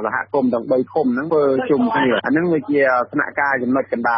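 A man speaking continuously in Khmer, a radio news broadcast.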